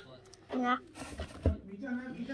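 A short spoken "yeah", then a single low thump about one and a half seconds in.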